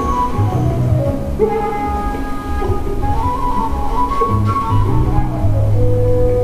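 Calm instrumental background music, slow, with long held notes over low sustained bass notes.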